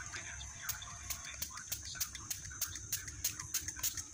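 Plastic trigger spray bottle spritzing water in a quick run of short sprays, about four a second.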